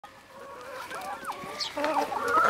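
A flock of brown laying hens clucking and calling close by, with short, overlapping calls and a falling note just past the middle, growing louder toward the end.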